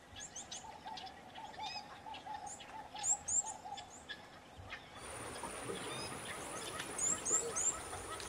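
Birds calling over forest ambience: a quick run of repeated low notes through the first half, and short high chirps that slide downward scattered throughout. About five seconds in, the background changes and a steady high whine joins, with a few more high chirps near the end.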